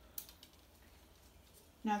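Scissors snipping the tip off a pipette: one short, sharp snip with a faint tick just after.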